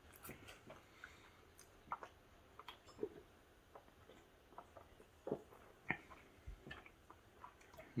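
Faint mouth sounds of a person chewing food, with soft scattered clicks and a few swallows of a drink from a soda can about midway.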